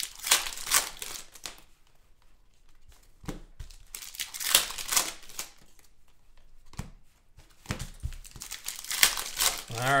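Foil trading-card pack wrappers crinkling and tearing as they are ripped open by hand, in several bursts.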